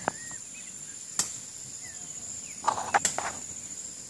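Insects trilling steadily at a high pitch in the background, with a few sharp clicks and a brief rustle about three quarters of the way in.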